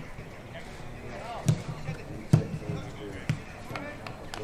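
Football being kicked back and forth in a passing drill: three sharp kicks, about a second apart, with players' brief calls and shouts in between.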